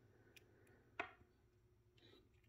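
Near silence, broken by one short plastic click about a second in as a plastic action figure is handled and posed by hand.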